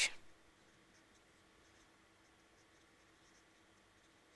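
Faint scratching of a felt-tip marker writing on paper, in short, scattered strokes.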